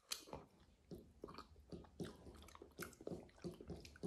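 A person biting into and chewing a slice of mango close to the microphone: an irregular run of soft, sharp mouth clicks, a few each second.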